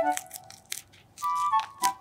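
Guinea pig chewing a piece of crisp green vegetable, with several short crunching bites, over light background music.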